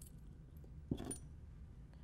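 Faint handling of small metal fishing-lure parts (wire, hook and spinner blades), with one short clink about a second in.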